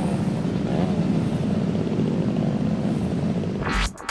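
A steady, motor-like mechanical drone with a fast pulsing texture, ending in a rising whoosh just before the end.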